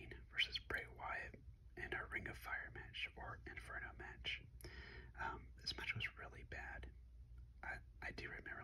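Whispered speech throughout, close to the microphone, over a faint steady low hum.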